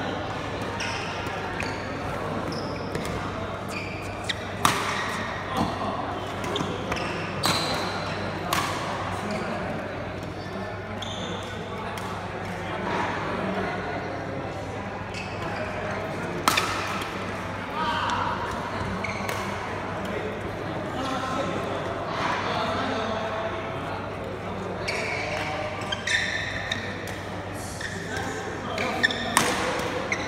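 Badminton rackets striking a shuttlecock in a doubles rally: sharp hits at irregular intervals, over background chatter in a large hall.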